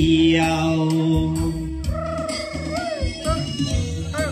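Karaoke backing track playing: a steady bass and beat. A man's held sung note ends in the first couple of seconds, and a wavering keyboard-like melody line carries the instrumental gap after it.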